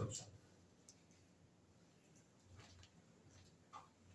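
Near silence in a small room, broken by a few faint clicks; the clearest comes just before the end.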